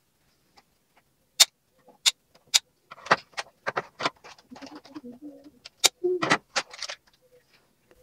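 Sharp plastic clicks and crinkles as a small plastic toy doughnut cart is worked loose from its clear plastic packaging tray. A few isolated clicks come about a second and a half in, then a denser run of clicking and rustling through the middle.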